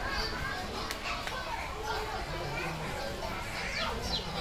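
Indistinct background chatter of shoppers, with high children's voices among it, running steadily and not close by.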